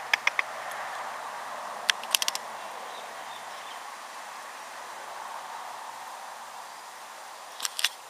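Quiet outdoor background with short runs of sharp clicks: a few right at the start, a quick cluster about two seconds in, and a couple more near the end.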